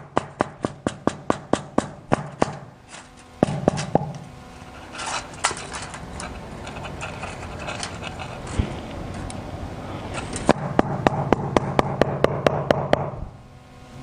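Rapid, even tapping on a gate rail, about five light knocks a second, in two runs: one at the start and one a few seconds before the end. The rail is being tapped down in its mortar bed to bring it to the right height and level.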